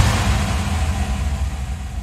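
A low, deep rumble with a fading airy wash above it, dying away slowly after the electronic dance music cuts off: the tail of a logo-reveal sound effect.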